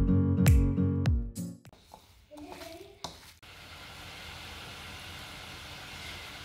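Strummed acoustic-guitar background music stops about a second and a half in. After a short lull, a steady hiss of water boiling in a saucepan on a gas stove sets in.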